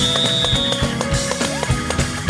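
Live gospel band playing with a steady drum beat and held keyboard notes; a thin high tone is held through about the first second.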